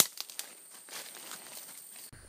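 Footsteps crunching through dry leaf litter: scattered light crackles and clicks, the loudest a sharp click right at the start.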